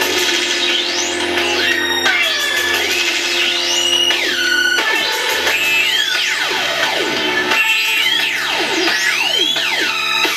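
Electronic music from a Korg DS-10 song on a Nintendo DS playing with a Eurorack modular synthesizer. Steady low bass notes that change about halfway through sit under many rising and falling synth pitch glides.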